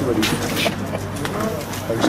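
Men's voices talking close by in a small group, with a steady low hum underneath.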